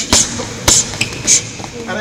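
Kickboxing gloves and a kick landing on a sparring partner's guard in a fast combination: three sharp slaps about half a second apart, with a lighter one between the last two.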